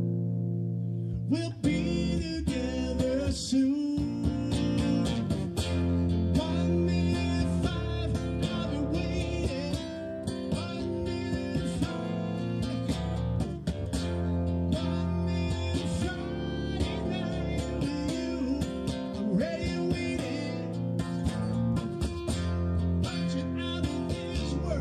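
Amplified acoustic-electric guitar strummed and picked in a live rock song, with a voice singing at times.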